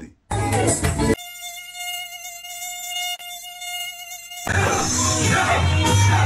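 A short loud burst of noise, then a steady high-pitched buzzing whine held for about three seconds, like a mosquito's buzz. It cuts off abruptly at about four and a half seconds, when loud worship music with singing starts.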